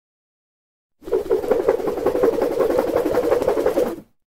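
A rapid, even percussive rattle, a sound effect that starts about a second in and stops suddenly near the end.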